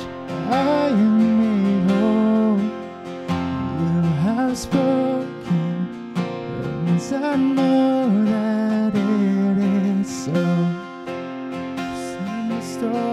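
A man singing a slow worship song, accompanying himself on a strummed acoustic guitar.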